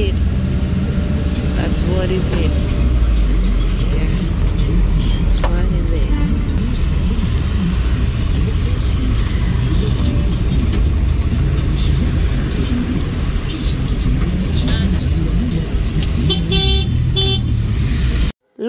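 Road traffic heard from inside a moving vehicle: a steady engine and road rumble, with car horns tooting and voices from the busy street.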